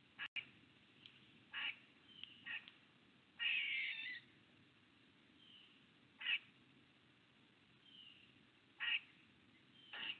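Faint bird calls from the surrounding trees: short calls repeating every one to three seconds, one longer call about three and a half seconds in, and a few soft down-slurred whistles between them.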